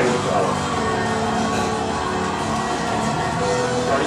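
Music soundtrack of a projected video, with sustained held notes, played over the room's speakers.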